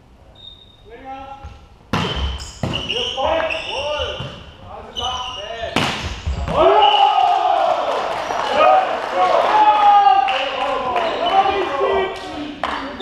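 A volleyball is struck hard about two seconds in and again near six seconds, during a rally. Players' shouts and calls fill the hall, loudest after the second hit as the point ends.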